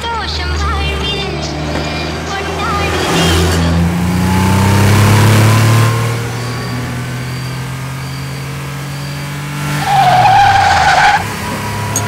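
Car engine rising in pitch as it speeds up, then holding. About ten seconds in, the engine note drops and tyres squeal in a loud, brief hard-braking skid.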